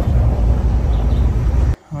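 Road and engine rumble inside a vehicle cab while driving, a deep steady noise that cuts off suddenly near the end.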